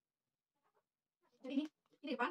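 A woman's voice: near silence, then one short murmured syllable about one and a half seconds in.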